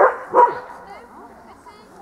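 A dog barking twice in quick succession, two short, loud barks about half a second apart.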